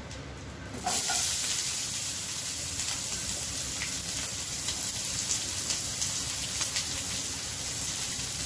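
Chopped onions dropped into hot oil with dried red chillies and curry leaves, setting off a sudden, loud, steady sizzle about a second in.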